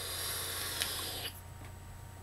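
Hiss of a vape being drawn on: air and vapour pulled through a Velocity clone rebuildable dripping atomizer for about a second, with a small click partway through, then stopping.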